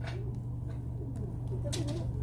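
Store background: a steady low hum with faint, distant voices and a few light clicks.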